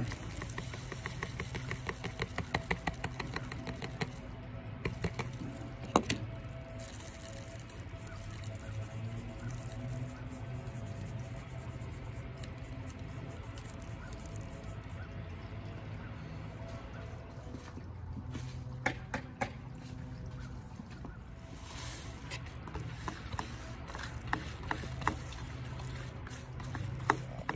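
Dry feather celosia seed and chaff being shaken in a small wire-mesh kitchen sieve over a plastic bowl: a quick patter of light ticks and rustling as the tiny seeds hit the mesh and bowl. The ticking comes in two spells, at the start and again near the end, with a single sharper tap about six seconds in. Faint steady music runs underneath.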